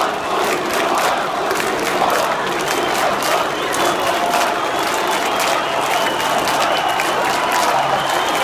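Large crowd of protesters shouting: a dense, steady din of many voices.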